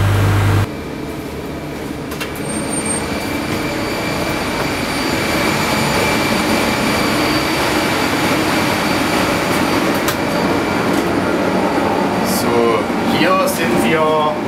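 Steady machinery noise of a swimming-pool plant room: a dense hum with a few thin high whines, slowly growing louder. A deep hum cuts off abruptly about half a second in.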